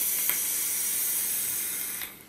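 A long draw on a box-mod electronic cigarette: a steady hiss of air pulled through the tank atomizer, stopping near the end.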